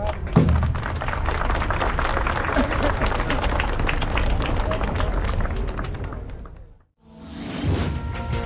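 Crowd applause with voices mixed in, right after a brass band's piece ends; it fades out about seven seconds in. Electronic theme music then starts near the end.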